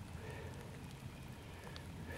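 Faint background ambience: a steady low hum under a light, even hiss, with no distinct sound event.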